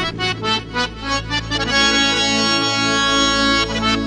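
Harmonium playing a quick run of short notes over a low steady drone, then holding a sustained chord for about two seconds before new notes start near the end.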